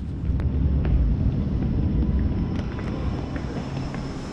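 A deep low rumble that swells in the first second and eases after about two and a half seconds, with a few faint clicks over it.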